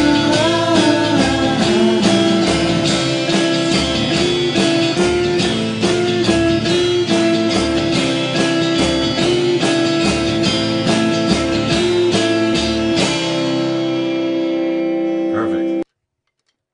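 Electric guitars playing together, a steady strummed rhythm under a lead line with sliding, bent notes. About thirteen seconds in the strumming stops and a final chord rings out for a couple of seconds before the sound cuts off suddenly.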